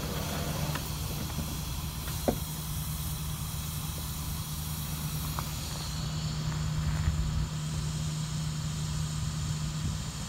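Steady hum with hiss from an NJ Transit ALP-46 electric locomotive and its Comet coaches standing still, with a single short click about two seconds in.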